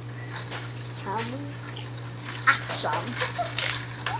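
A few short knocks and a rustle as a plastic bucket of ice water is picked up, with brief wordless voice sounds and a steady low hum underneath.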